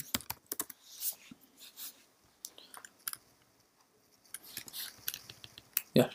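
Computer keyboard keystrokes typing a terminal command: a quick run of key clicks, then scattered single clicks, a pause of about a second, and another run of keystrokes near the end.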